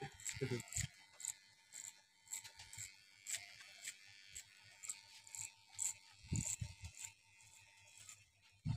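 Barber's scissors snipping hair in a run of short, crisp, irregularly spaced snips, a few soft low knocks among them.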